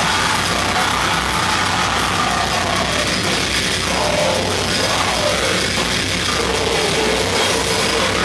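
Live heavy metal band playing at a steady full volume: distorted electric guitars, bass and a drum kit.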